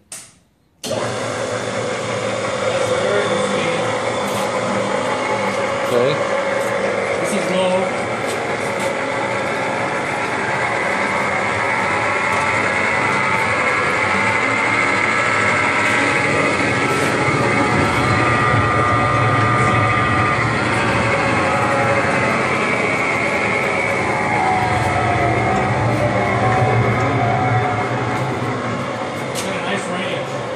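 Auxiliary electric motors of an Urschel Comitrol 2100 meat processor switched on with a click and starting about a second in, then running steadily with a loud hum and shifting whine.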